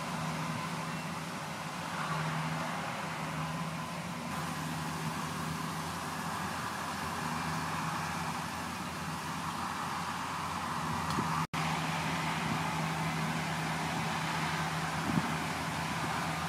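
Steady outdoor background noise: an even hiss over a low hum, like traffic heard from afar, cutting out for an instant about eleven and a half seconds in.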